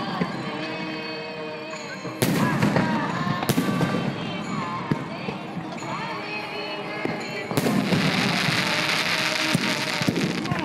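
Aerial fireworks going off: a sharp bang about two seconds in, another near three and a half seconds, then a bigger burst at about seven and a half seconds followed by a dense crackling that runs on for a couple of seconds.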